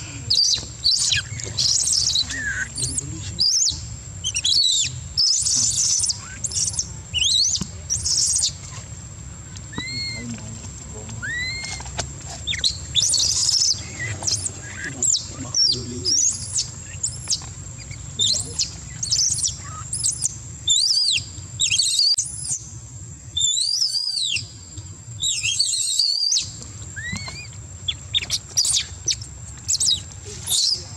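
Infant long-tailed macaque crying: a long run of short, high-pitched arching squeals, repeated in bouts with brief breaks.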